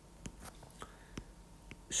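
Stylus tip tapping and writing on a tablet's glass screen: about five faint, sharp clicks at irregular intervals, with a faint breath, and a man's voice starting a word right at the end.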